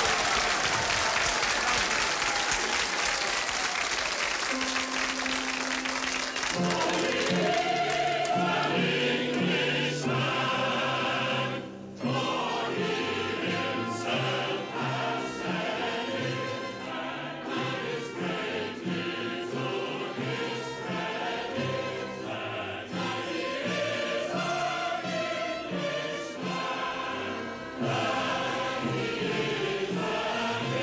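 Applause from a crowd for the first few seconds, then a chorus of many voices singing together with accompaniment.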